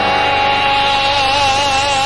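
A singer holding one long high note with vibrato over the song's backing music.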